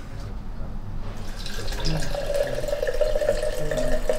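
Vodka poured from a small glass bottle into a tall drinking glass: a steady trickling pour whose hollow tone grows stronger about halfway through.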